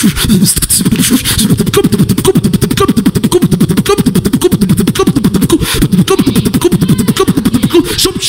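Human beatboxing into a handheld microphone, amplified through the PA: a fast, unbroken run of sharp clicks and snares over a pulsing low bass.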